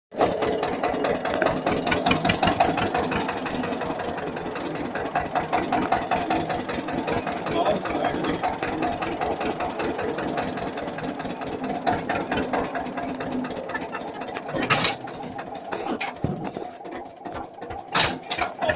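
A vehicle engine running steadily with rapid, even firing pulses, with a brief loud burst about fifteen seconds in.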